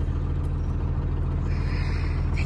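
Tractor engine running steadily at an even speed, a low constant drone with no change in pitch.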